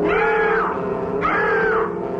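A woman screaming in long, high wails, two in the space of about two seconds, over a steady sustained musical drone.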